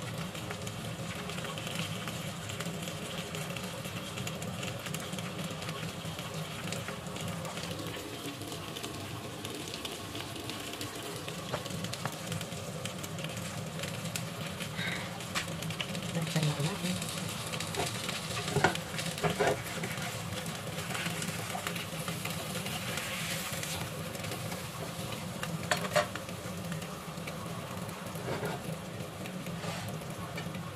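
Flour-dusted cod steaks sizzling steadily in hot oil in a frying pan, with a few short knocks partway through and near the end.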